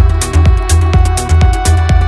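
Progressive house music from a continuous DJ mix: a four-on-the-floor kick drum at about two beats a second, offbeat hi-hats, a pulsing bassline and held synth chords.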